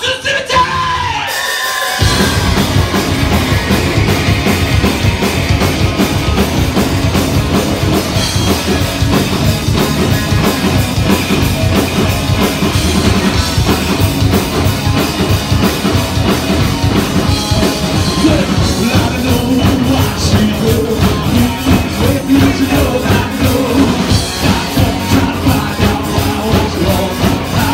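Live rock band starting a song: electric guitars, bass and drum kit playing loud with shouted singing, the full band coming in about two seconds in.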